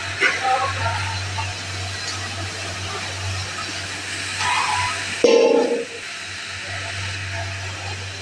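A large pot of tomato-based sauce boiling hard, a steady hiss with a low hum beneath it. There is a brief louder bump about five seconds in.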